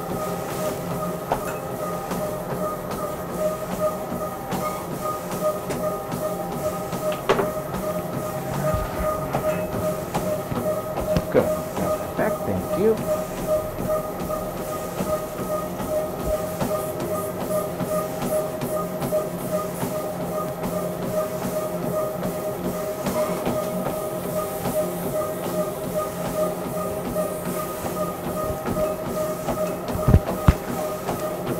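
Stress-test treadmill running at speed, its motor giving a steady whine, with a runner's footfalls thudding on the moving belt at a late, fast stage of a Bruce-protocol exercise test.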